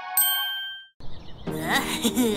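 A single bright, bell-like ding sound effect, struck once and ringing out, fading away within about a second; after a brief silence a new, busier stretch of sound starts in the second half.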